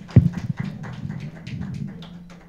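Scattered hand-clapping from a small audience, quick uneven claps several a second over a low steady hum. A single loud, low thump comes just after the start.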